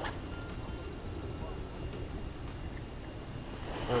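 A short swish right at the start as a spinning rod casts a lure out, then a steady low rumble of open-air noise on the microphone.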